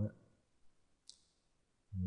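Two faint computer mouse clicks, about half a second and a second in, against near quiet.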